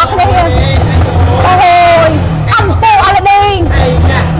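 A woman talking over a low steady rumble, most likely the engine of the sport motorcycle she is sitting on, idling.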